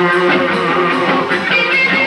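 Live rock band playing, with electric guitar strumming to the fore over a steady beat.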